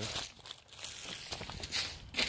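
Rustling and crinkling handling sounds, a few short scrapes with one near the end.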